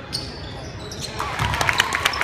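Basketball game on a hardwood gym floor: just after the start the ball strikes the rim with a short metallic ring. From about a second in come a quick run of sneaker squeaks and ball bounces as players go after the shot.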